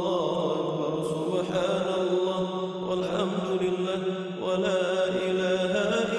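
Wordless vocal chanting used as a background bed: a steady held drone with fainter notes shifting above it.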